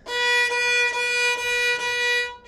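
Violin playing a steady B, first finger on the A string, bowed as several back-to-back strokes on the same note.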